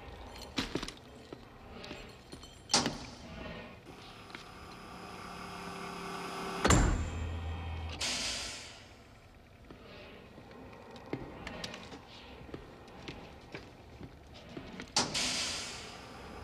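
Film soundtrack sound effects: a few sharp knocks, then a rising hum that ends in a loud, heavy thud with a brief low rumble, followed by hissing. Another burst of hiss comes near the end.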